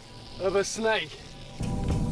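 A man's short two-syllable vocal sound, then background music comes in with a dense low bed about one and a half seconds in.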